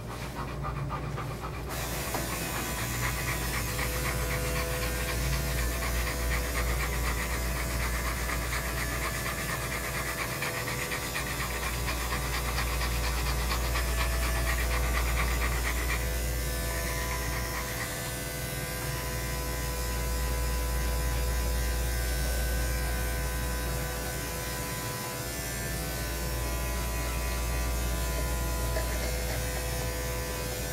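Electric dog clippers with a #10 blade running steadily while a dog pants; the clipper sound changes about halfway through. A low bass rumble runs underneath.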